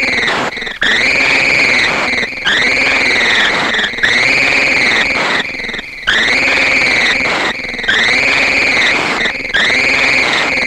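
Electronic sound effect: a synthesized tone that swoops up and back down in pitch, repeated about once a second over a noisy hiss.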